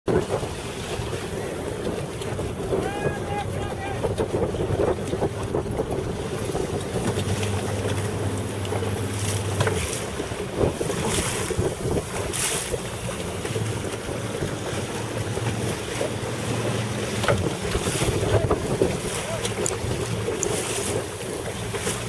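Wind gusting across the microphone over choppy open water, with waves splashing around the boats. A low steady hum comes and goes.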